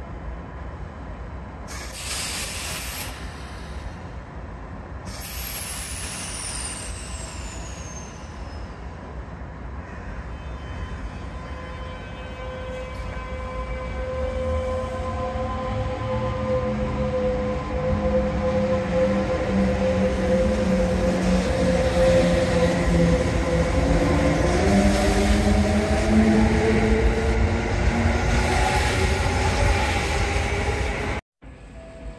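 Kintetsu 22000 series ACE electric train pulling away. Short hisses of air, one with a high falling whistle, come in the first few seconds. Then the inverter and traction motors whine in several tones that step and rise in pitch as it accelerates, with running and wheel noise growing louder as the cars pass.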